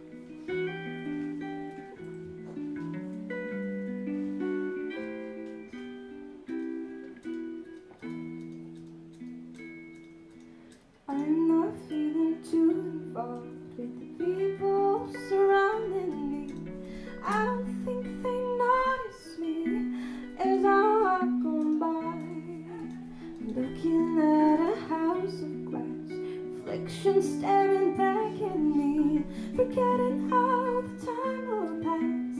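Live band music: a clean archtop guitar plays picked chords alone for about eleven seconds, then a woman's voice comes in singing over the guitar.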